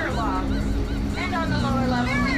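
People's voices, with a drawn-out exclamation falling in pitch at the start and another rising and falling about a second in, over a steady low hum.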